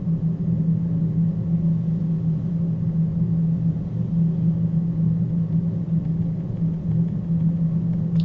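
Steady low hum of constant pitch, loud and unbroken: background noise running under the recording.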